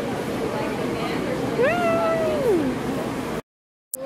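One long, high-pitched vocal sound from a person, rising, held and then falling, about halfway in, over the chatter of a crowd. Near the end the sound cuts out for half a second and comes back with a click.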